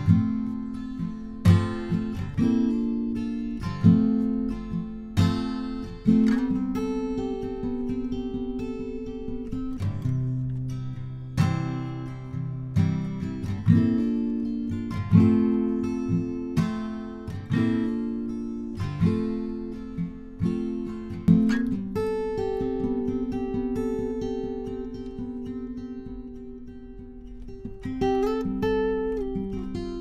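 Acoustic guitar strummed in chords, each struck about once a second and left to ring, with a softer passage in the second half. It is recorded close with a Lewitt LCT 440 Pure condenser microphone.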